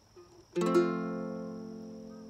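Ortega baritone ukulele: a single chord strummed about half a second in, left to ring and slowly fade.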